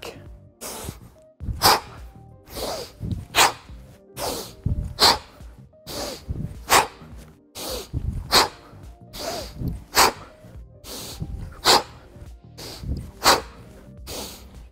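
Sharp, forceful breaths in time with two-handed-to-one-handed kettlebell swings: a strong exhale about every second and a half, with a softer breath between. Faint background music runs underneath.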